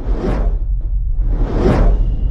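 Two whooshes about a second and a half apart over a steady deep bass rumble: the sound effects of an animated title sting.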